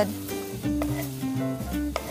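Diced tomatoes and red onions sizzling in a frying pan, heard under background music playing a run of held notes.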